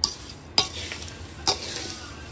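Crisp fried poha chivda being tossed by hand in a steel pan: a dry rustling of the flakes, with two sharp clicks about a second apart.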